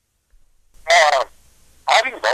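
Two short wordless vocal sounds from a man, like grunts, about a second apart.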